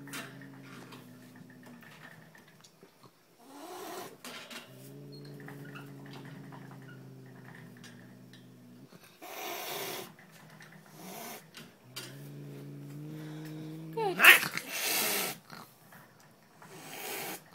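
An angry domestic tabby cat growling in long, low, steady growls, three in all, with short hisses between them. The last growl rises sharply in pitch into a loud hiss near the end, the loudest moment.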